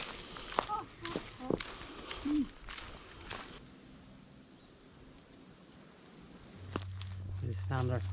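Footsteps crunching irregularly through dry leaf litter for the first few seconds, then a quieter stretch. A low steady hum starts shortly before the end, with a voice beginning over it.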